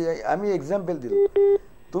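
Voices on a telephone call-in line, then a short, flat electronic beep on the phone line lasting under half a second, broken briefly once.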